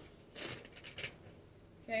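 Soft rustling of a tarot deck being handled, two short faint bursts in the first second, followed by a woman's voice briefly at the very end.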